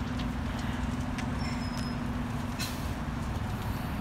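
Iveco city bus engine running with a steady low drone as the bus pulls in to the kerb and slows. A faint short high squeal comes about a second and a half in, and a brief hiss a little later.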